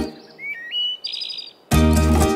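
Cartoon sound effect during a break in the music: a few short whistle-like tones rising in steps, then a brief high twinkling chime. A plucked-string children's tune starts again near the end.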